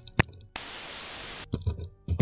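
A sharp click, then a burst of hissing static lasting about a second that cuts off suddenly, followed by a few quick clicks.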